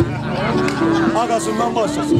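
Amplified voice over a microphone, holding one long low note about a second in, over steady backing music.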